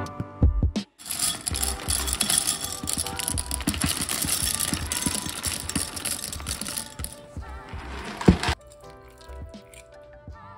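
Dry penne pasta poured into a glass Pyrex measuring cup: a dense rattling clatter of hard pieces lasting about seven seconds, stopping suddenly, over background music.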